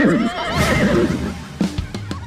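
Horse whinny sound effect: a wavering call that falls in pitch over about the first second, over background music.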